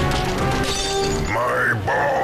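Music bed of a comedy radio promo with a crash-like sound effect. From a little over a second in, a high, wavering, voice-like cry comes in.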